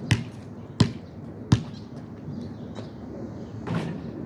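A basketball bouncing on asphalt, three sharp bounces about 0.7 seconds apart, followed by a softer, longer noise near the end.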